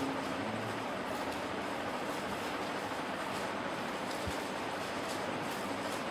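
Steady, even background hiss with no speech, and a faint low knock about four seconds in.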